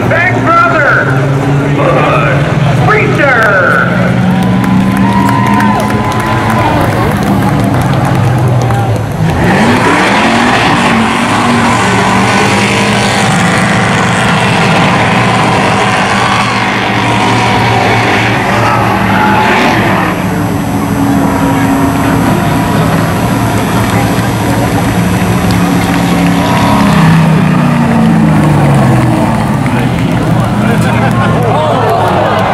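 Hobby stock race car engine revving up and down through a burnout. The spinning tyres squeal and hiss loudly from about ten seconds in until about twenty seconds in, and the engine keeps revving after that.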